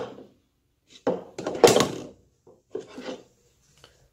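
Plastic drinking cups being handled and cleared off a countertop, knocking and rubbing against each other and the counter. A cluster of knocks starts about a second in and lasts about a second, and a shorter one follows near the end.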